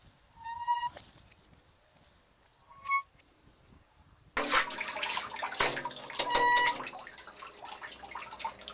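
Wooden well windlass and chain giving a few short squeaks as the crank turns. Then, from about four seconds in, a sudden loud splashing and sloshing as the bucket drops into the well water and fills, with one more squeak partway through.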